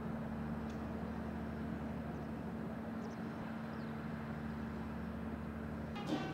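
A steady low mechanical hum, as of an engine running, over a faint outdoor noise background.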